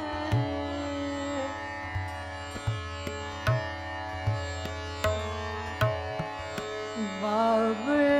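Hindustani khyal singing in Raga Bhairavi by a female vocalist, over a steady tanpura drone and a slow tabla beat. A held, gliding note fades out in the first second or so, leaving the drone and low tabla strokes, and the voice slides back in near the end.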